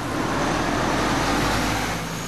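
A city bus driving past, its engine rumble and tyre and road noise swelling up and beginning to fade near the end.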